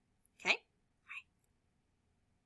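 A woman's short, breathy vocal sound about half a second in, falling in pitch, then a brief soft hiss just after a second.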